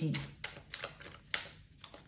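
Tarot cards being handled on a table: about eight short, irregular clicks and snaps of card stock, the sharpest about a second and a half in.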